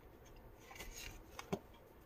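A tarot card being drawn from the deck and laid on a cloth: a faint soft rustle of card on card, then two light taps about a second and a half in.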